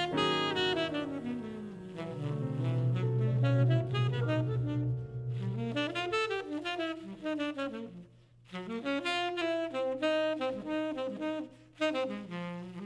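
Tenor saxophone playing a jazz melody over plucked double bass, with a short break in the phrase about eight seconds in.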